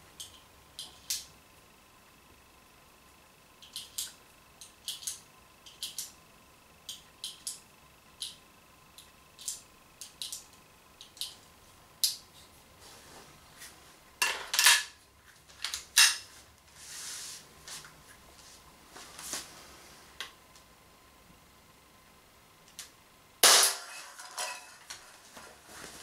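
Small metallic clicks and clinks from handling and loading an Umarex Walther PPQ M2 ball pistol, with a few louder knocks partway through. Near the end comes one sharp shot from the pistol.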